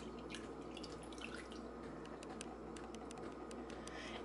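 Chicken broth being poured from a plastic measuring cup into a crock pot of chicken, heard faintly as a soft trickle with small scattered drips and splashes.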